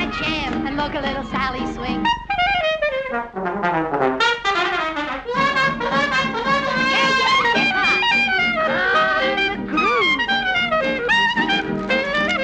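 1930s swing band playing an instrumental break led by brass, trumpets and trombones, with quick downward runs a few seconds in.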